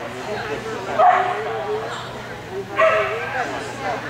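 A dog barking in high-pitched yips, twice: about a second in and again near three seconds, with voices in the background.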